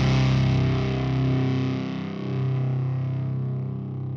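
Gothic metal music ending: a held distorted electric guitar chord ringing out and slowly fading, its lowest bass note dropping out about a third of the way in.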